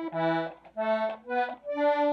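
Hohner Erika club-model C/F button accordion played on the treble buttons: about four short separate notes, demonstrating its modified low notes, where two buttons four apart give the same note on the pull. Its reeds are tuned with a tremolo beat.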